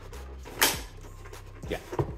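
A single sharp plastic click about half a second in as a monitor stand's clip-on bracket is pressed and snaps into the mount on the back of the monitor.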